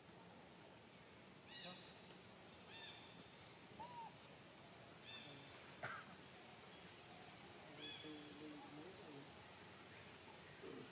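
Faint, short high-pitched animal calls, about four of them a second or two apart, over a near-silent background, with a single sharp click about six seconds in.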